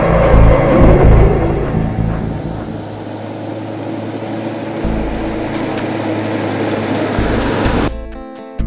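Four-wheel-drive vehicle driving on a dirt road: a loud, steady engine rumble with the hiss of tyres on gravel, loudest in the first second or two, cutting off abruptly near the end.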